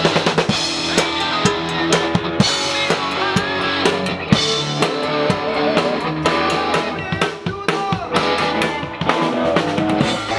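Live band playing: a drum kit keeps a steady beat of bass drum and snare hits under electric guitars.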